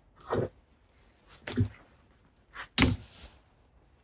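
Three sharp cracks, one about a third of a second in, one near the middle and one near the end, from hand cutters biting through dry pine deadwood as a jin is shortened. The last crack is the loudest.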